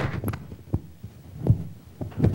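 Microphone handling noise: a few dull low thumps and rubs, the loudest about a second and a half in, as a clip-on microphone is fitted to the speaker.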